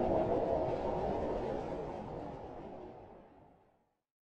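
Logo-intro sound effect: a low, noisy swell that is loudest at the start and fades out near the end.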